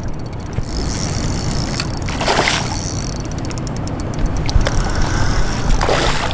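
A hooked smallmouth bass splashing at the surface beside the boat near the end, with a shorter splash about two seconds in, over a steady low rumble.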